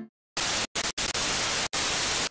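TV static sound effect: a hiss of white noise that starts about a third of a second in and cuts out sharply for an instant several times, like a glitching signal.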